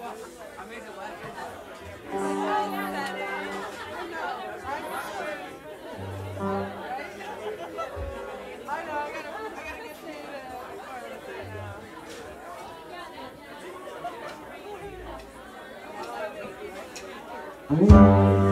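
Audience chatter in a bar between songs, with a few isolated notes from the band's instruments, including single low bass notes. Near the end the band starts playing loudly.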